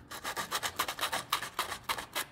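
80-grit sandpaper rubbed by hand over the wood of a pencil box in quick back-and-forth strokes, several a second, sanding off pencil marks with the grain.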